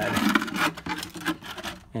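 Plastic coffee can scraping and rubbing as it is slid in under a mower, a quick run of scuffs and knocks that is loudest in the first second and then dies away.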